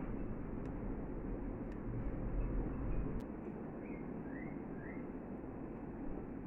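Quiet steady room noise with a few faint, sharp clicks of 3.5 mm metal knitting needles as stitches are knitted. Three faint short rising chirps come about halfway through.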